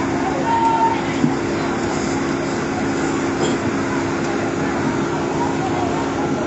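A steady engine-like drone with a low hum, under a din of people's voices.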